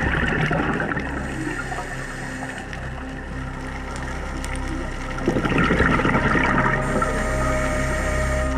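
Underwater camera audio of a scuba diver exhaling through a regulator: two bursts of bubbles, a short one at the start and a louder one about five seconds in, over a steady low hum.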